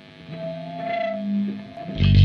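Nu-metal song intro: an electric guitar through effects plays a few slow, held notes that swell in after a brief dip.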